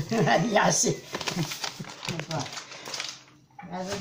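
Speech in a small room, with a few faint clicks from handling mixed in.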